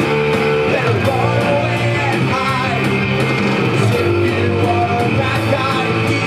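Live punk rock song played on electric guitar, with a man singing over it.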